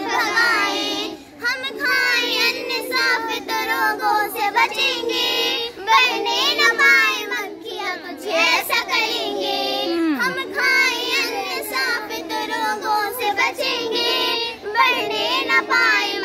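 A group of young schoolgirls singing a Hindi song together in unison.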